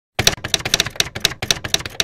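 Manual typewriter keys striking in a quick, uneven run of clacks, about eight a second, starting just after the start.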